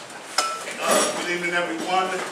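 A sharp clink about half a second in, then a louder clatter of hard objects around the one-second mark, with people talking in the room.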